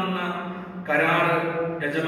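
A priest intoning a liturgical chant of the Mass into a microphone, his voice held on long, nearly level notes. One phrase ends just before the one-second mark and the next begins at once.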